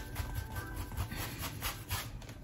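A paintbrush scrubbing acrylic paint onto canvas in a run of quick, irregular back-and-forth strokes while blending the colour.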